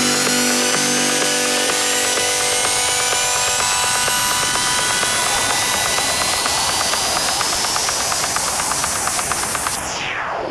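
Electro house build-up with no kick or bass: several synth sweeps rise steadily in pitch over a dense, noisy synth texture, and a steep falling sweep comes near the end, just before the track drops back in.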